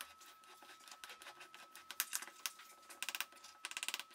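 Metal spoon stirring cocoa powder into cake batter in a ceramic bowl: faint scrapes and light clicks of the spoon against the bowl, with quick runs of rapid ticks near the end.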